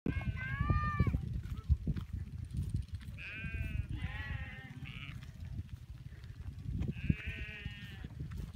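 Goats and sheep in a large herd bleating: about four long, wavering bleats, one near the start, two in the middle and one near the end, over a steady low rumble.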